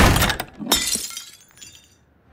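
A door shuts with a heavy thud, and under a second later a small plaque drops off it and shatters on the wooden floor, with the pieces ringing briefly as they settle.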